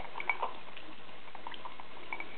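African grey parrot drinking tea from a cup, with small wet clicks and sips of its beak and tongue in the liquid, scattered a few to the second.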